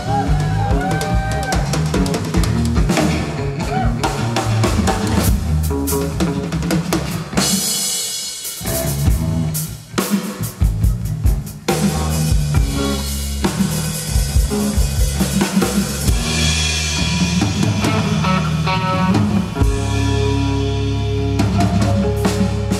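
Live rock band in a drum-led instrumental passage: busy drum kit playing with bass drum, snare and cymbals over bass guitar and electric guitar. It drops briefly to a sparser, quieter stretch about a third of the way in, then builds back up.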